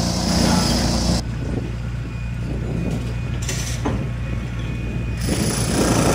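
A steady low engine hum runs throughout, with a high hiss over it in the first second and again from about five seconds in.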